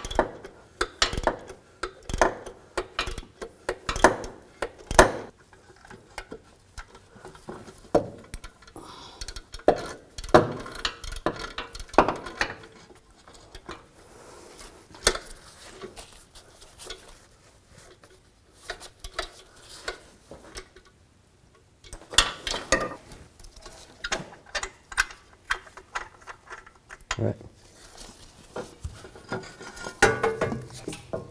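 Irregular metallic clinks and knocks as a Chevrolet Traverse's rear catalytic converter and exhaust pipe are worked loose by hand, metal knocking on metal, in clusters with short pauses.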